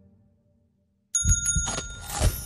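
The previous music fades out, then about a second of silence, then a sudden bright bell-like ringing with a low drum beat starts: the opening of the series' title jingle.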